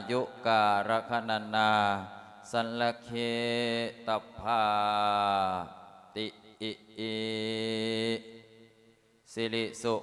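A Buddhist monk chanting Pali verses in a long-drawn melodic style, holding each note for a second or more with slow pitch glides; the voice is amplified through a microphone. The chant trails off near the end before faster recitation resumes.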